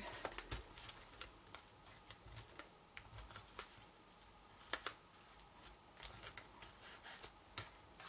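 Faint, irregular clicks and light rustling of fingers working baker's twine into a bow against a cardstock box.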